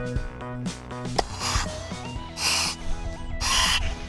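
Breaths drawn through a firefighter's SCBA face mask and air-pack regulator: a click about a second in, then three hissing breaths roughly a second apart, over background music.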